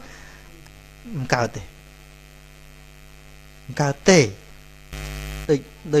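Steady electrical mains hum in the recording during a pause in a man's speech, broken by a few short spoken syllables. About five seconds in there is a brief burst of noise lasting about half a second.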